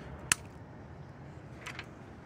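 A single sharp click about a third of a second in, then a fainter tick near the end, over a low steady hiss.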